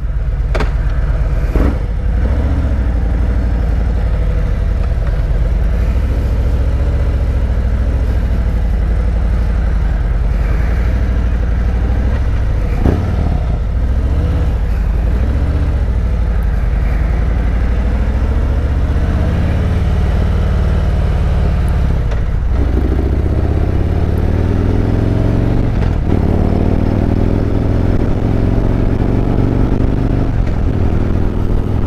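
2017 Harley-Davidson Road Glide's Milwaukee-Eight 107 V-twin running under way, pulling away and riding at low speed at first. From about two-thirds of the way in it accelerates through the gears, the engine pitch rising in several pulls one after another.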